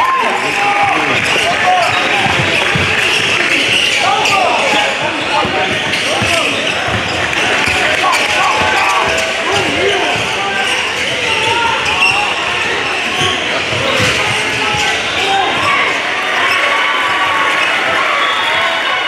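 Game sound on a basketball court: a basketball bouncing on the hardwood floor now and then, amid a steady hubbub of players' and spectators' voices echoing in a large gym.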